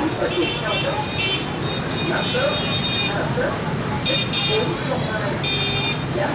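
Busy city motorbike traffic running steadily, with horns honking several times: short toots and one held for about two seconds. Indistinct voices in the street.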